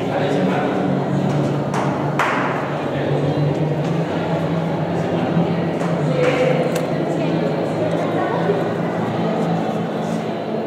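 Ringing, chime-like notes from an interactive light-up 'piano' of coloured LED buttons as they are touched: two close together about two seconds in and another about six seconds in, over a steady low hum and murmur of voices.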